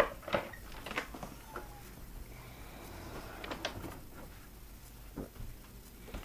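Scattered clicks and knocks as a fiberglass floor hatch over a boat's engine compartment is unlatched and lifted open.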